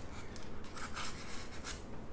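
Light scraping and rubbing from paint cups and a stirring stick being handled, with a few short scratchy strokes about halfway through and near the end.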